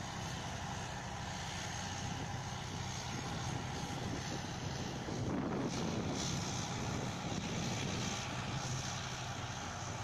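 Heavy tracked vehicles' diesel engines running steadily under load, a Vityaz DT-30 carrier working through deep mud with a tracked engineering vehicle. The engine sound grows a little louder about five seconds in.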